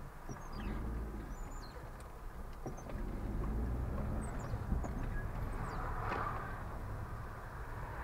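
Car moving in slow city traffic, heard through a dashcam microphone: a steady low engine and road rumble that swells a little about half a second in and again midway, with a few short, high chirps over it.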